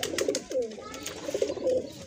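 Domestic pigeons cooing, a low warbling coo that rises and falls, with a few faint clicks near the start.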